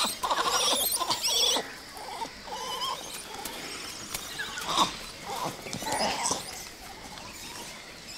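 Grey (Hanuman) langurs giving high, wavering squealing calls of alarm over what they take for an injured baby. The calls are loudest in the first second and a half, and a few fainter calls follow around five to six seconds in.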